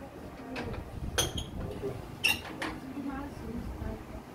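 An old wooden double door being worked at its top bolt. It gives two sharp clicks, about a second in and again a second later, with faint voices in the background.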